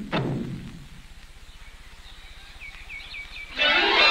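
The last stroke of a hula percussion rhythm ringing out, then a lull with a low hum and a few short, falling bird chirps. Loud music with voices comes in suddenly near the end.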